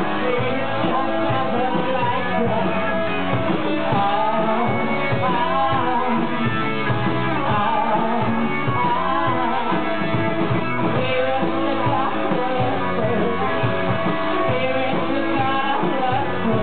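Live rock band playing at a steady loud level: electric guitars and drums, with a singer's voice over them.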